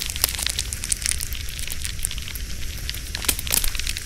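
A campfire crackling: a steady rushing hiss over a low rumble, with many irregular sharp snaps and pops.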